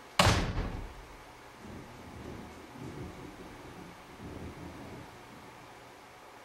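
A single loud bang a moment in, fading within about half a second, followed by quieter low thumps and rumble.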